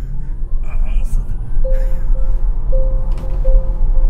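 Loud low rumble inside a moving car cabin. From about halfway through, a short flat tone repeats several times over it.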